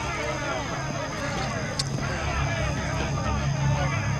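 Indistinct chatter of several voices talking at once over a low rumble, with a steady high-pitched whine and one sharp click about two seconds in.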